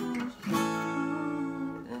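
Acoustic guitar strumming chords. Each chord rings for over a second, with brief dips between the strums.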